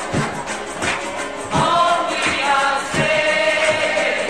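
Choir singing over a steady drum beat, with a long held note near the end.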